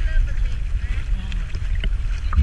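Sea water sloshing and splashing around a GoPro held at the surface as snorkelers paddle beside it, with a heavy low rumble on the microphone and voices of the group mixed in.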